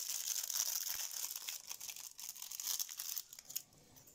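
Foil booster-pack wrapper crinkling and crackling as it is handled, dying away about three and a half seconds in.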